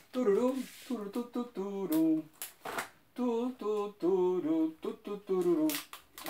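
A man humming a tune without words, in short held notes, with a few sharp clicks from boxes being handled.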